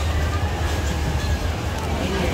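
Busy street-market ambience: a steady low rumble under the murmur of background voices.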